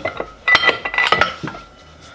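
Cast iron barbell weight plates clanking against each other as they are handled: a quick run of metal knocks over about a second, with a short metallic ring.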